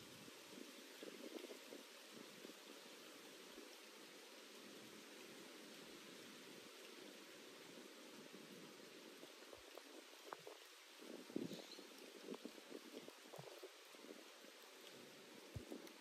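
Near silence: faint steady outdoor room tone, with a few faint rustles about two-thirds of the way through.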